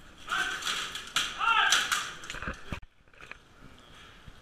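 Loud shouting during armoured sparring, with sharp impacts of weapons striking, the first about a second in and another a little later; low thuds follow, and the sound cuts off suddenly just before three seconds.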